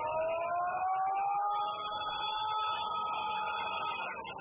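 Siren-like wail in the yosakoi dance music: several tones glide upward together and then hold steady, cutting off near the end as the music resumes.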